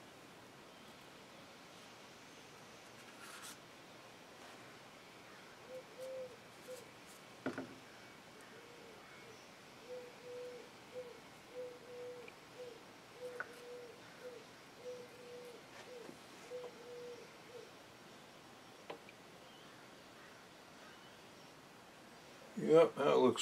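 A faint series of about fifteen short hooting notes, all at the same low pitch and spaced about half a second to a second apart, starting about six seconds in and stopping a few seconds before the end. A sharp small knock comes between the early notes, and a lighter click follows later, over a quiet room.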